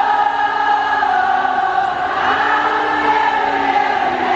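Live arena concert sound: a singer holding two long notes through the arena sound system, the second coming in about halfway through with a slight rise in pitch.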